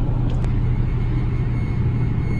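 Steady low rumbling drone with a faint hiss, and a faint click about half a second in.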